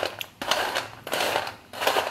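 Crisp deep-fried chickpeas rattling and clattering against a steel strainer as they are moved about, in a few short bursts; the dry rattle is the sign that they have fried crunchy.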